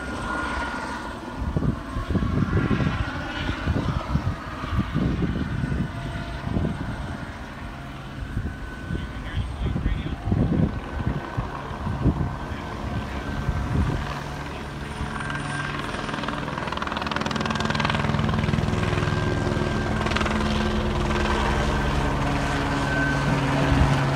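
Helicopter circling overhead, its rotor and engine sound uneven at first, then steadier and louder in the second half as it comes closer.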